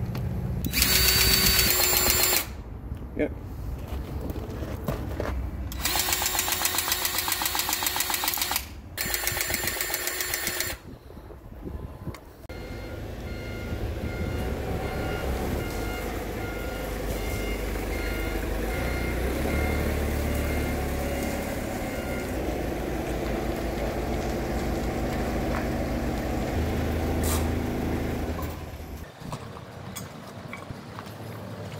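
Cordless battery grease gun running its pump in three bursts, about a second and a half, three seconds and two seconds long, pumping grease into a steer cylinder pivot pin. After that an engine runs steadily, with a regular high beep repeating for about ten seconds.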